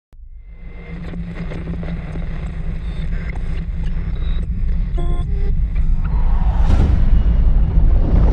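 Cinematic logo-intro sound design: a deep bass rumble that builds steadily in loudness, with short glitchy electronic blips about five seconds in and a swelling whoosh near the end.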